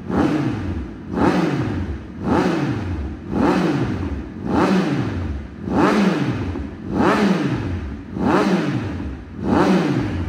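2022 Triumph Speed Triple 1200 RS's inline three-cylinder engine, breathing through a titanium Racefit end can, revved in short throttle blips while standing in neutral. About nine blips, roughly one a second, each a sharp rise in revs that falls quickly back.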